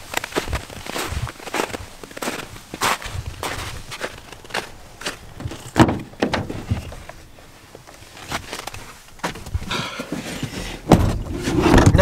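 Footsteps crunching on packed snow, about two steps a second. A clunk about halfway through as the Ford Transit Custom's driver door is unlatched and opened, then the door is shut with a loud thump about a second before the end.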